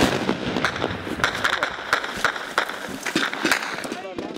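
Gunfire in a firefight: a sharp bang at the very start, then many irregular, overlapping shots.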